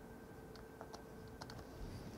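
Faint, scattered clicks and taps of a stylus on a tablet screen during handwriting, a few light ticks spread irregularly through the two seconds.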